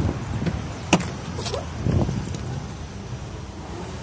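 A VW Polo's door being opened: one sharp latch click about a second in, followed by brief rustling and knocking as the door swings open.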